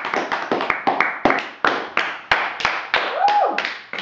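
Scattered hand claps, a few people clapping unevenly at about four claps a second. Near the end a brief high tone rises and falls over them.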